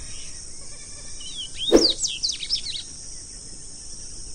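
A songbird sings a short run of quick, high, down-slurred notes in the middle, over a steady high hiss. A brief sharp sound, the loudest moment, comes just as the notes begin.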